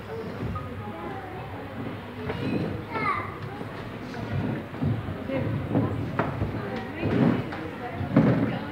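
Overlapping chatter of children and adults in a hall, with a high child's voice about three seconds in and a few scattered knocks near the end.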